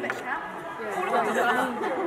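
Group chatter: several people talking at once, with no clear words standing out.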